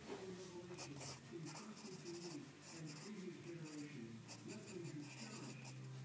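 Pencil writing on sketchbook paper: faint, irregular scratching strokes as words are lettered by hand.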